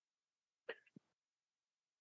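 Near silence, broken once, under a second in, by a brief faint sound.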